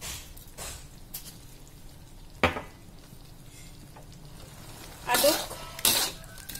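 Metal spatula stirring sliced banana blossom in a steel wok over a low sizzle, with a single sharp clack of metal on the wok about halfway through and louder scraping near the end.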